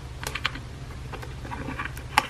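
Small crisp clicks and rustles of an Apple Watch, still in its protective wrap, being pried and lifted out of its cardboard box tray: a few sharp ticks about a quarter second in and a quick flurry near the end, over a steady low hum.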